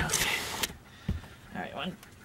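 Scraping and rustling against a camper's metal door frame as a person hauls themselves up into the doorway, with a low thump about a second in.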